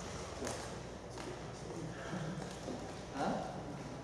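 Quiet room tone with faint voices in the background and a couple of light taps in the first second and a half, then a brief spoken "uh-huh" near the end.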